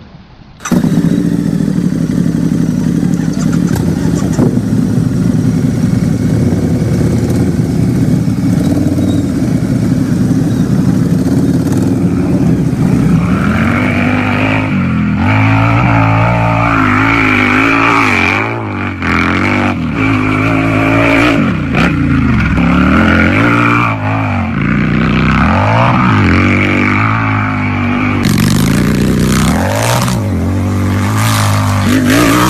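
Hero Pleasure scooter's single-cylinder engine running while riding, heard loud and close. It begins abruptly about a second in and holds a steady pitch, then from about halfway through its pitch rises and falls again and again as the throttle is opened and eased off.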